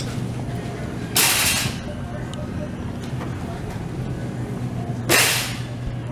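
Two short, loud hissing bursts about four seconds apart over a steady low hum.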